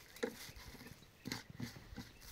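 A few short knocks and clicks of a plastic water jerrycan being handled as its screw cap is taken off and put down.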